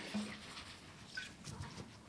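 Faint voices of a woman and a man speaking quietly, with a short exclaimed "Ooo" just after the start and low murmured words later.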